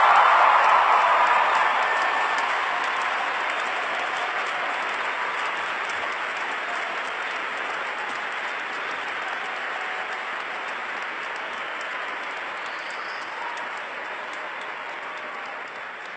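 A large audience applauding in a big hall: the applause is loudest at first and then slowly and steadily dies down.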